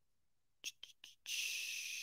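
A few faint clicks a little past half a second in, then a steady breathy hiss starting just past the middle: a man's long exhale through the mouth.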